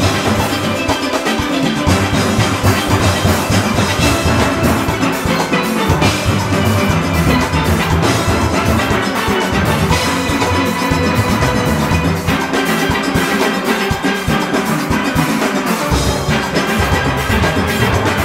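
A large steel orchestra plays a fast calypso-style Panorama arrangement at full performance tempo: many steelpans ring out a dense melody and chords over a drum-kit, cymbal and conga rhythm section. The deep bass thins out for a few seconds and comes back strongly near the end.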